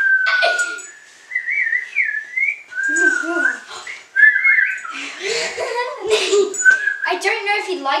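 A child whistling a string of short, wavering notes through the first half, trying to whistle on request, broken up by laughter and talk; one more brief whistle comes near the end.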